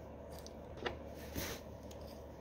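Faint handling noise from hand work on a small-engine carburetor's float bowl: two light clicks about a second in, half a second apart, as a small wrench is brought onto the bowl bolts.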